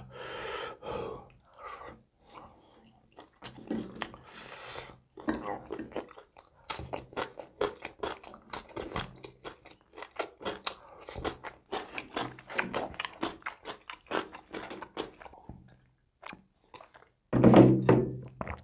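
Close-miked chewing and crunching of pork ribs in gravy, with many quick wet mouth clicks, thickest in the middle stretch. Short hums come in early, and there is a louder vocal grunt near the end.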